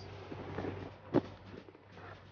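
Faint rustling as a package is handled, with one sharp click about a second in.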